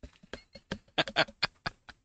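A man laughing: a quick string of short laughs, about a dozen in two seconds.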